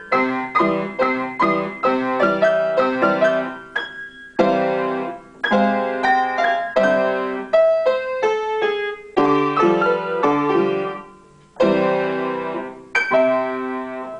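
Upright piano played four hands as a duet: chords and melody struck in short phrases, with brief pauses between phrases.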